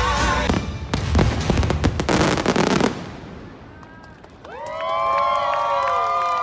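Show music ends, then a rapid salvo of fireworks crackles and bangs for about two seconds. After a short lull, a crowd starts cheering and whooping near the end.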